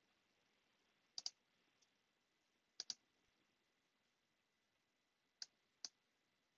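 Faint computer mouse clicks against near silence: a quick double-click about a second in, another about three seconds in, then two single clicks near the end.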